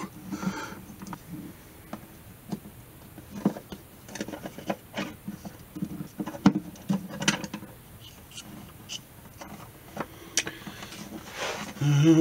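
Screwdriver backing out a long pickup mounting screw, then a P-90 pickup being lifted out of a guitar body's cavity and its braided lead wire handled: irregular small clicks, taps and scrapes.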